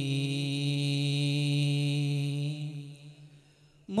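A group of singers holding one long, steady note of an Islamic devotional song. It fades out about three seconds in, leaving a moment of near silence.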